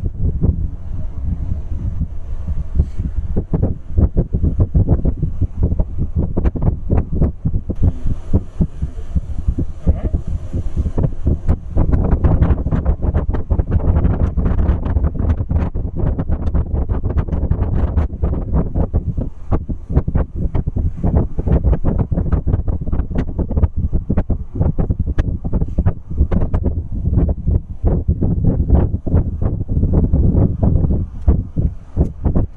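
Wind buffeting the microphone from a moving vehicle: a loud, low rumble broken by irregular thumps, with road or running noise underneath and a short higher hiss about eight seconds in.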